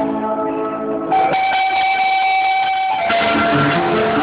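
Guitar music being played, with a single high note held steady for about two seconds in the middle before the melody picks up again.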